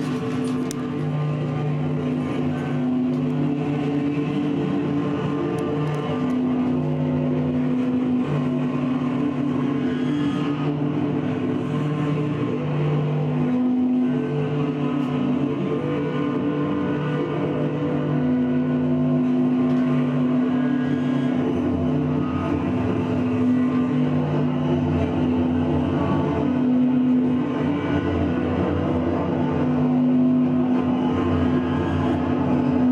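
Amplified electric guitar drone worked through effects pedals: low held tones that swell and shift slowly and never break, with a grainy layer of noise above them.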